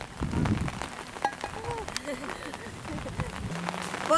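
Rain falling steadily, heard as a hiss with many small ticks of drops, under quiet voices.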